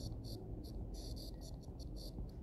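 Stylus scratching faintly across a tablet screen in short handwriting strokes, several a second, over a low background hum.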